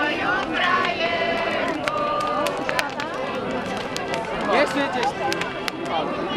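Overlapping voices of a group of people, with sharp crackles and pops from a large burning wood bonfire scattered throughout.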